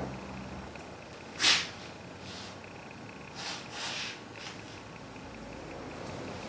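A man's sharp sniff through the nose about one and a half seconds in, followed by a few softer, brief brushing and handling sounds as a brush is worked in a can of tyre bead sealer, over a low steady hum.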